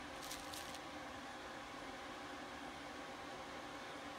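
Faint steady hiss of room noise. Early on there is a brief light rustle as a server processor is handled and picked up off bubble wrap.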